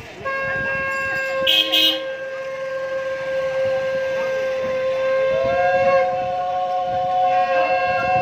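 Conch shells (shankha) blown in long, steady notes. A second conch at a slightly higher pitch joins about five seconds in, and the two sound together. Two brief sharp sounds come about a second and a half in.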